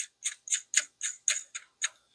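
A regular run of sharp metallic clicks, about four a second, that stops just before the end, as a part on the shotgun's barrel assembly is turned by hand.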